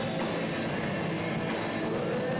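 Rock band playing live: electric guitars and drum kit in a dense, steady wash of sound with no break.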